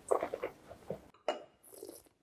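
A wine taster sipping red wine and working it in the mouth: a quick run of short wet slurps, a sharper slurp about a second in, then a brief hiss near the end.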